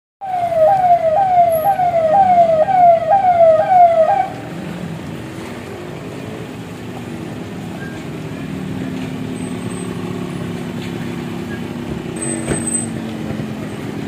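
A convoy vehicle's electronic siren sounding a fast, repeating wail, about two cycles a second, each cycle jumping up and sliding down in pitch. It cuts off about four seconds in, leaving the steady running of SUV engines as the vehicles pull up.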